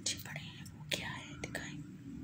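Faint whispering, with three light clicks.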